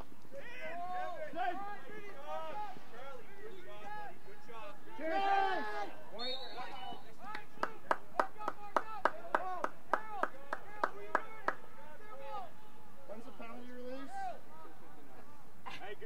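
Shouted calls from players and coaches across a lacrosse field. In the middle comes an irregular run of about a dozen sharp clacks, roughly three a second.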